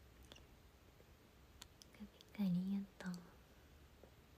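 A young woman's brief, soft wordless voice sound, like a murmured hum, about two seconds in and lasting about a second, with a few faint clicks around it.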